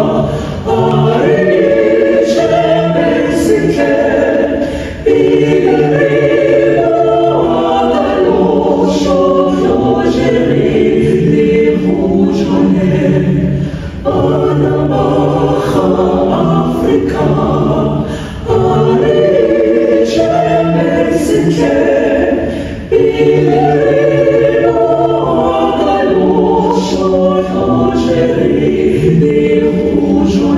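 A choir singing held chords in several parts, in long phrases with short breaks between them.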